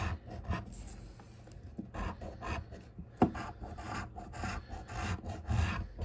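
A metal coin scraping the latex coating off a paper lottery scratch-off ticket: irregular rasping strokes, with one sharper click about three seconds in.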